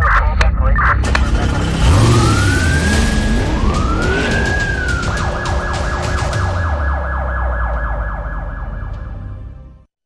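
Siren sound effect in a TV crime-show title sting: after a few sharp hits, a wail rises and falls twice, then switches to a fast yelp warble over a deep rumble, fading out just before the end.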